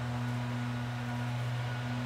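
A steady low electrical hum, one low tone with a fainter higher one above it, over a faint hiss.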